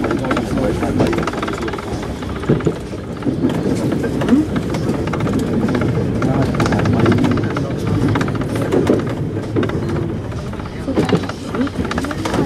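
Paris Métro line 2 train running at speed over a steel viaduct, heard from inside the cab, with low, unclear voices talking under the running noise.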